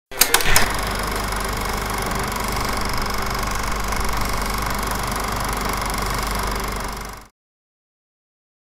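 Film projector running: a few sharp clicks at the start, then a steady mechanical clatter with a low hum, which stops about seven seconds in.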